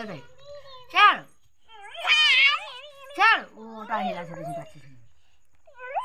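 Young children's high-pitched voices: a series of short calls and squeals that rise and fall in pitch, with brief pauses between them.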